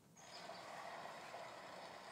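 Faint, steady outdoor ambience, a soft even hiss, fading in just after the start as the music video's soundtrack begins.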